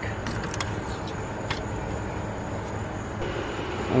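Steady background rumble with a few light clicks and taps, the metal dipstick being slid back into its tube in the engine bay.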